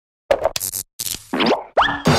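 Cartoon sound effects for an animated logo: a quick run of short pops and clicks in the first second, then two fast rising pitch glides.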